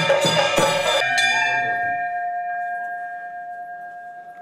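Temple music of ringing bells and percussion struck in a quick rhythm, about two to three strikes a second, stops about a second in; a single bell tone rings on and slowly fades.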